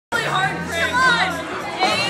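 Several voices talking over one another, with background music playing underneath.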